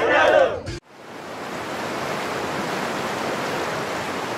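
A voice with music cuts off suddenly under a second in. A steady rush of splashing water then fades in and holds.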